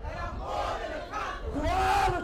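A church congregation singing together in worship, many voices at once.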